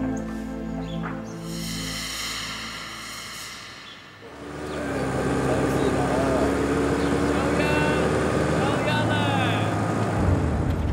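Background music fades out about four seconds in. A car engine then runs steadily, with a few short indistinct voices near the end.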